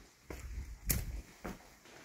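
Quiet footsteps and handling sounds as someone walks through a wooden doorway, with one sharp click about a second in.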